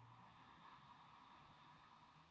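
Near silence: faint room tone with a soft, even hiss and a low hum.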